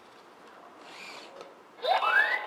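Faint whir of the NAO humanoid robot's joint motors as it moves its arms, with a soft burst about a second in. Near the end a loud rising swooping electronic sound starts.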